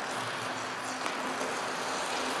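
Figure skate blades gliding and carving on rink ice, a steady hiss with a faint low hum under it.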